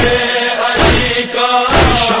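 A voice chanting a devotional noha in Urdu, set to a steady heavy beat a little under once a second.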